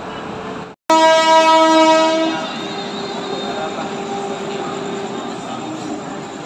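Electric locomotive air horn sounding one loud blast about a second and a half long, coming right after a sudden cut in the sound. A steady drone carries on after it.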